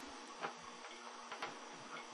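Quiet workshop room tone with a faint hum and a few soft ticks, the clearest about half a second in.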